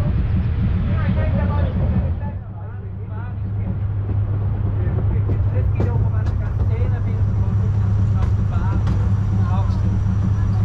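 Steady low rumble of a cog-railway carriage underway, with passengers' voices chattering over it.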